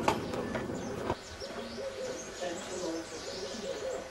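Two sharp knocks in the first second, then repeated short, low calls with faint high chirps above them, typical of birds or other wildlife calling in the evening.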